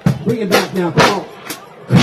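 Live band with drum kit: a few sharp drum hits under a voice. After a short drop in level, the full band comes back in loud right at the end.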